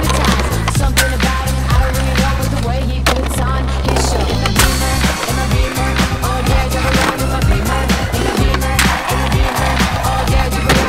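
Skateboards rolling over stone paving and clacking and grinding on a stone ledge as tricks are popped and landed, heard over a hip-hop beat with a heavy, steady bass line.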